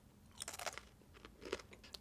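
A tortilla chip crunching as it is bitten and chewed close to the mouth: a few short, crisp crunches about half a second in and again around a second and a half, with quiet gaps between.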